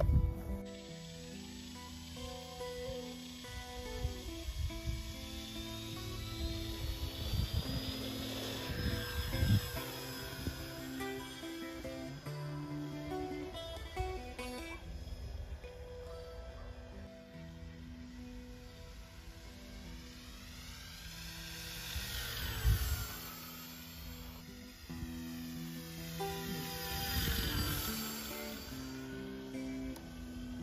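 Background music, under which the high motor whine of a small radio-controlled P-51 Mustang model plane rises and falls in pitch as it makes several passes. The clearest passes come about two-thirds of the way through and near the end.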